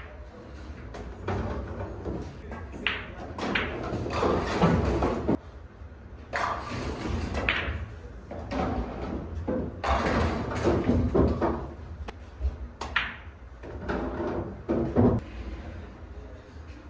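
Pool balls clicking on a pool table: sharp cue-tip and ball-on-ball knocks come several times, spread through a steady background of room noise.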